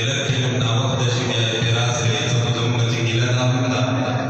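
A man's voice chanting a melodic Islamic recitation, holding long, steady notes.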